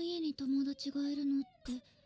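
Anime dialogue: a girl's high-pitched voice speaking Japanese in a few short, level-pitched phrases, which fall quiet about a second and a half in.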